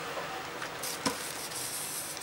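Faint rustling of baking paper as a clothes iron is slid over it to fuse plastic Pyssla beads, with a few light knocks.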